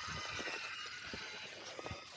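Faint, irregular clicks and crunches from a 1/10-scale four-wheel-steer RC rock crawler creeping over rough ground.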